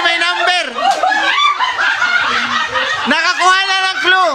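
A group of people laughing and talking excitedly over one another, several voices at once.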